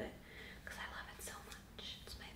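Quiet whispering: short breathy speech sounds with no voice behind them, in two brief patches.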